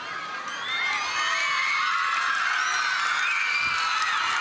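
A crowd of school students cheering and shouting, many high voices overlapping, growing louder about a second in.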